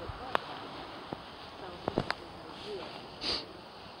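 Footsteps through the dry branches of a fallen pine tree: about four sharp twig snaps spread over the first two seconds, then a short rustle of branches and needles about three seconds in.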